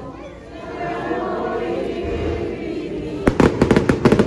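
A crowd singing together, then, a little over three seconds in, a string of firecrackers goes off: a rapid run of loud, sharp bangs, about eight a second, louder than the singing.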